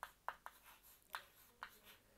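Chalk writing on a chalkboard: about six faint, short taps and scratches as letters are formed.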